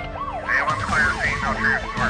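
Emergency-vehicle siren in a fast yelp, its pitch sweeping up and down about four times a second, used as a sound effect in a radio show intro.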